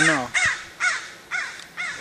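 A crow cawing over and over, about two caws a second.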